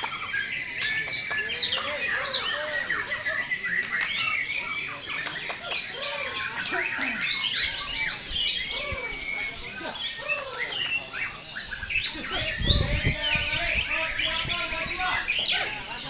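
Several white-rumped shamas (murai batu) singing over one another in competition: a dense tangle of fast chirps, trills and rattles, with a high held whistle coming back again and again. A low rumble about twelve seconds in.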